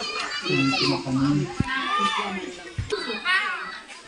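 Children's voices chattering and calling, with a couple of brief low bumps around the middle.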